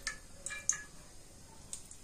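A few light metallic clicks and taps of a steel spoon against an aluminium pressure cooker as oil is spooned in, the first few close together and one more near the end.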